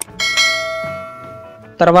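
Bell sound effect from a subscribe-button animation: a click, then a bright chime struck about a quarter second in that rings and fades away over about a second and a half.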